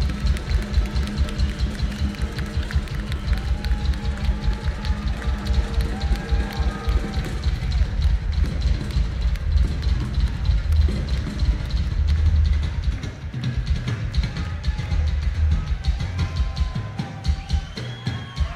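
Live hard-rock concert sound dominated by a drum kit: fast, closely packed bass-drum beats with snare hits.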